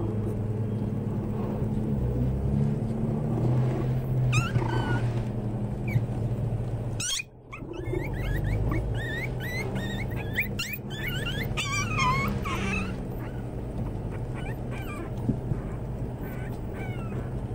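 Puppies yipping and whimpering in short, high squeaks, thickest in the middle of the stretch, over a steady low hum.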